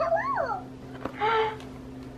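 A baby's wordless vocalizing: a short squeal that rises and then falls in pitch, and a second, shorter breathy call about a second later.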